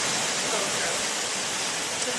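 A steady hiss of background noise, even and unbroken, with a faint trace of a voice in it.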